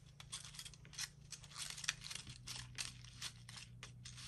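Faint rustling and scraping of cardstock as slotted paper cactus pieces are pushed into slits and fitted together by hand, in many small irregular ticks over a low steady hum.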